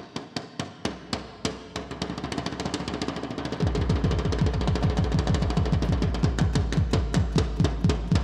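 Fast stick-drumming on homemade percussion: a painted drum shell and PVC-pipe drums struck in a dense, driving rhythm that builds in intensity. About three and a half seconds in, a deep bass pulse joins and the playing gets louder.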